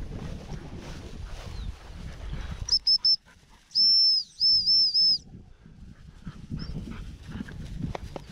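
Footsteps swishing through dry grass, then a dog-training whistle: three short pips about three seconds in, followed a moment later by a longer blast with a few dips in pitch, the stop signal on which the springer spaniel drops.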